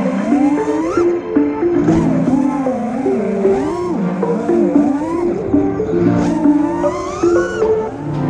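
Background music mixed with the motors of an FPV freestyle quadcopter, their pitch swooping up and down again and again as the throttle changes.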